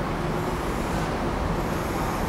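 Steady background noise: a low rumble with a faint hiss above it, even throughout, like distant road traffic. There are no distinct clicks, puffs or other events.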